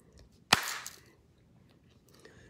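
A single sharp click about half a second in, trailing off in a brief hiss.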